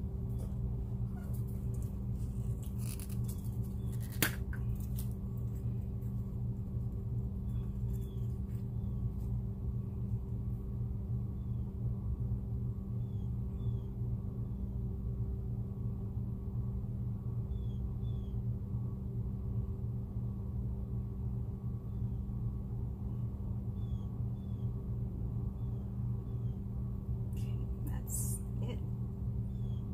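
Steady low hum of a running motor or appliance, holding several fixed tones throughout, with a few light taps and clicks in the first seconds and near the end.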